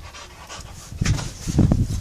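Pit bull panting hard while leaping at a tug toy held overhead, the breaths getting much louder from about a second in as it jumps and grabs the toy.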